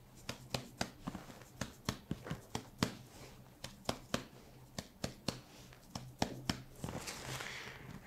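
Chest percussion: a gloved finger tapping on a finger laid flat on the chest, a long irregular series of soft, sharp taps, two to three a second. Near the end a short rustle as the hands come away.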